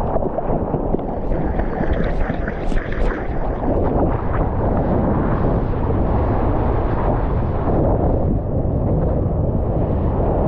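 Water rushing and splashing past a surfboard's nose as it paddles into and rides a wave, with wind buffeting the board-mounted action camera's microphone. A few sharp splashes stand out about two to three seconds in.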